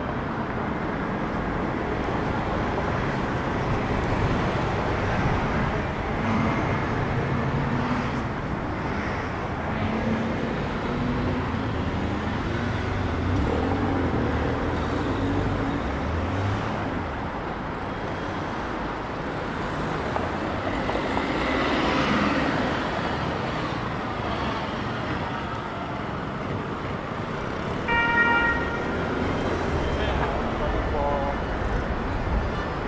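Steady city street traffic, cars and other motor vehicles driving past, with louder passing traffic about two-thirds of the way through. Near the end a vehicle horn gives a brief toot.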